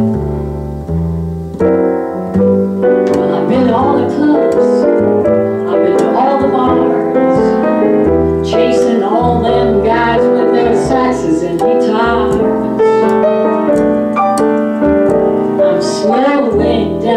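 Jazz piano and plucked upright bass playing an instrumental passage together, the bass moving through a line of low notes under the piano's chords and runs.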